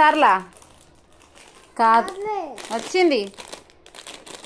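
A high-pitched voice in three short phrases with gliding pitch, and faint crinkling sounds in the gaps between them.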